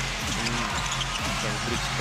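Basketball arena sound during live play: steady crowd noise and arena music, with a ball being dribbled on the hardwood court.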